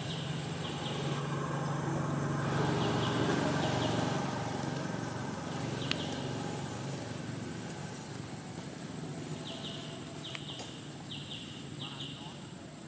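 Outdoor ambience: a low motor hum that swells over the first four seconds and then slowly fades, with groups of short, high, repeated chirps at the start and again near the end, and a single sharp click about six seconds in.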